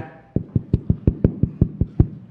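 A quick, even run of about a dozen sharp taps, roughly eight a second, starting about a third of a second in.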